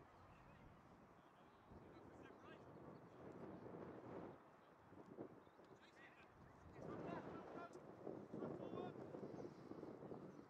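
Faint, distant shouts and calls of rugby players across an open pitch, loudest in two stretches in the middle and towards the end.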